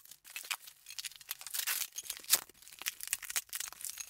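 Plastic bubble wrap crinkling and crackling as it is handled and pulled at to open a tightly wrapped package, with many sharp, irregular crackles.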